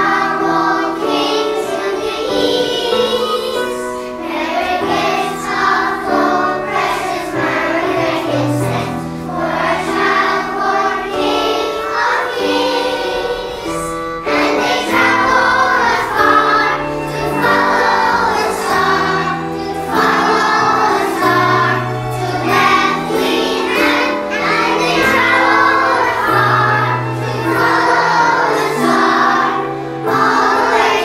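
Children's choir singing a Christmas song over instrumental accompaniment with a sustained bass line.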